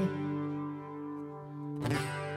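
Acoustic guitar chord left ringing and slowly fading as the singing stops, then strummed again near the end.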